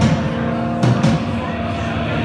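Amplified electric guitar: a chord struck right at the start and another about a second in, each left to ring.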